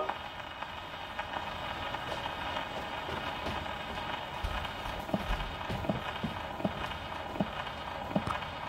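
Acoustic gramophone's needle running in the run-out groove of a shellac 78 rpm disc after the song has ended. There is a steady surface hiss, with light clicks repeating at about two a second.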